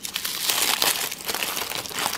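Thin wrapping paper crinkling and rustling steadily as hands unwrap a tiny plastic plate from it.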